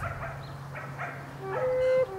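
A dog barks faintly a few times in the background, then a slow melody of long, held, pure notes begins about one and a half seconds in.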